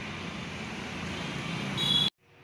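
Steady rushing background noise that swells slightly, with a short high-pitched tone near the end, then cut off abruptly.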